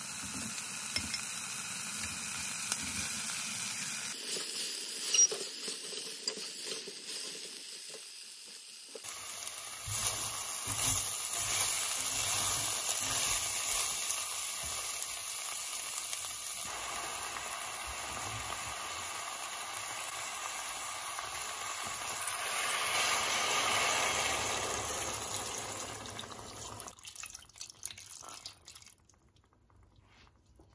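Onions and tomato, then lamb pieces, sizzling as they fry in a stainless steel pot, with a silicone spatula stirring and scraping through them. The sizzle dies away over the last few seconds.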